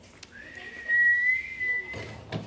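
A person whistling one clear note that slides up at the start and then holds for about a second and a half.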